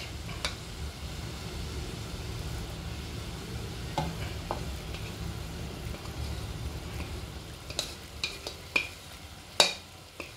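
A saucepan of water simmering over a gas flame, with a steady low rumble and faint hiss. Sharp knocks come once about four seconds in and several times near the end, as utensils hit the pan while scraped coconut is added and stirred in; the last knock is the loudest.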